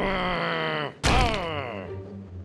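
An angry cartoon groan from the animated mummy, in two parts: a long held groan, then a sharp thump about a second in followed by a second groan that slides down in pitch.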